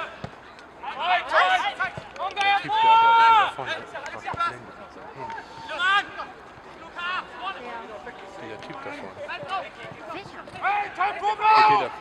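Men shouting calls across an outdoor football pitch during play, with loud drawn-out shouts about a second in, a shorter one around six seconds, and more near the end.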